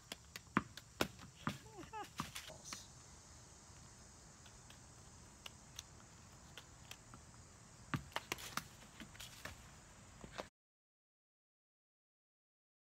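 Juggled balls, tennis balls among them, slapping into the hands in short sharp catches: several in the first two seconds, sparser in the middle, and a quick run of them around eight seconds in. The sound cuts off suddenly about ten and a half seconds in.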